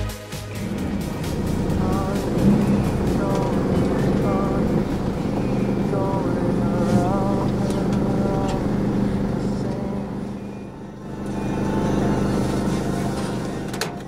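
Mercedes Sprinter van on the move, its engine hum and road noise heard from inside the cab, with faint wavering voices over it at times.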